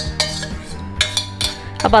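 Stainless-steel vessel and ladle knocking and scraping against a steel cooking pot, several sharp clinks during pouring and stirring.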